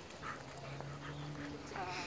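A dog gives a short, wavering high-pitched whine near the end, over a faint steady low hum.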